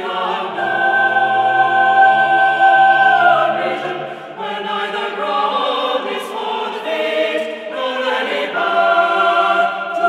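Unaccompanied choir singing slow, long-held chords, the harmony shifting about four seconds in and again about eight seconds in.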